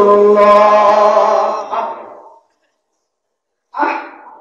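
A man chanting melodically in a sermon through a PA microphone, holding a long note that fades out about two seconds in. After a silent gap, a brief burst of his voice comes in near the end.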